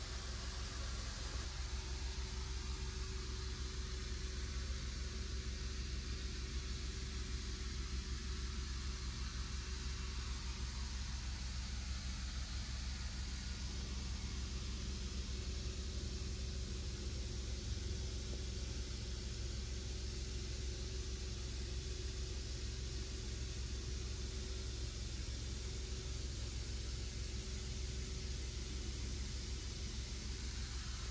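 Steady, unchanging low hum with a hiss above it, the sound of a machine running, with no break or change in pitch.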